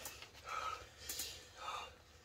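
Three short, soft, breathy exhales from a person panting through the burn of a super-hot chili chocolate.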